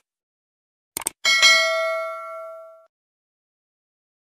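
Subscribe-button animation sound effect: a quick double mouse click about a second in, then a single bright bell ding that rings out and fades away over about a second and a half.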